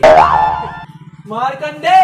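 Cartoon-style comic 'boing' sound effect: a loud springy twang whose pitch bends up and back down, dying away in under a second. A brief voice follows about a second and a half in.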